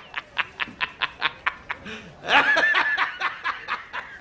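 A man's rapid cackling laughter, short 'ha's coming about six a second, with a louder, higher, drawn-out peal of laughter about two seconds in.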